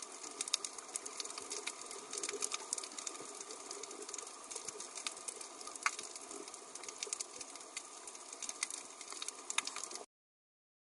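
Underwater reef ambience: a faint steady hiss with many scattered sharp clicks and crackles throughout.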